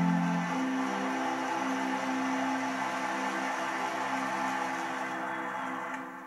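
Soft instrumental background music of held, sustained chords, changing chord about half a second in and fading out near the end, played through a TV speaker.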